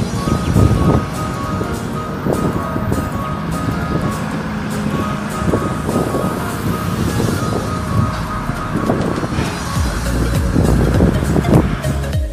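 Background music over steady outdoor noise of wind and a boat engine, heard from on the water.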